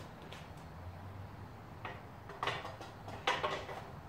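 A few short knocks and rustles of objects being handled on a workbench, the loudest about three and a quarter seconds in, over a low steady hum.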